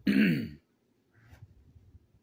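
A person clears their throat once, a short rough sound about half a second long that falls in pitch. A faint short breath or sniff follows about a second later.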